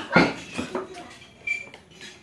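A brief clatter just after the start, then a single short, high clink about three-quarters of a second later, like utensils or dishes knocking together.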